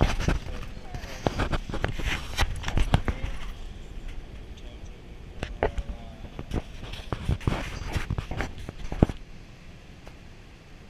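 Close knocks, clicks and rubbing of an action camera being handled and set in place, with a few brief voice sounds among them. The handling stops about nine seconds in, leaving a faint steady hiss.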